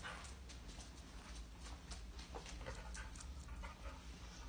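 A dog searching by scent for a hidden anise hide, heard faintly as irregular sniffing and short clicks of movement, over a steady low hum.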